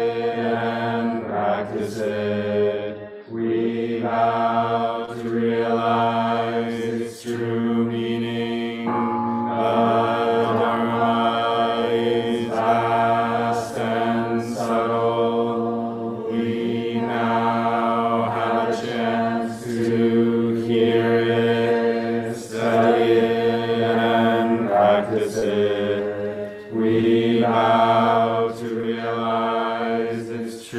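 Voices chanting a liturgy in a steady monotone, the held note broken into short phrases every couple of seconds.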